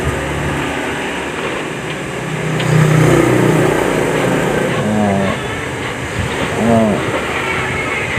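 Low, steady engine rumble, growing louder about three seconds in and easing off after.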